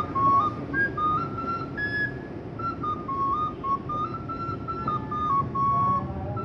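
Bansuri, an Indian transverse bamboo flute, playing a slow melody of held notes that step up and down, ending on a longer held note.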